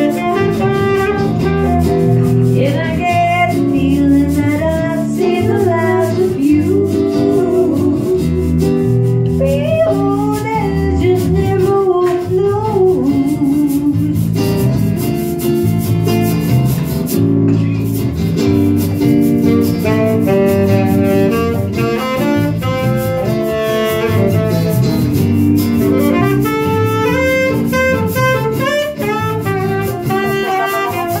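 A small live band playing jazzy music, with guitar chords underneath and a saxophone carrying a bending melodic line above.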